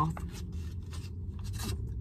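Foil juice pouch crinkling and scraping in the hand: a handful of short, irregular crinkles over a steady low rumble.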